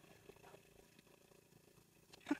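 Near silence, with a faint steady low hum.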